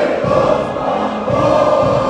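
A choir of many voices singing with music, in long held notes of about a second each.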